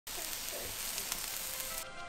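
Vegetable kebabs sizzling on a charcoal barbecue grill, a dense crackling hiss; music comes in near the end.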